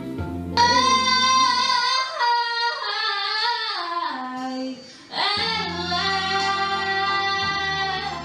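A female vocalist singing live over instrumental accompaniment: a long held note, then a falling run, a short break about five seconds in, and another long held note.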